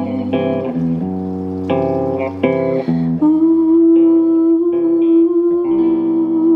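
Acoustic and electric guitars playing a slow song, with a woman's wordless vocal that holds one long, slightly wavering note from about three seconds in.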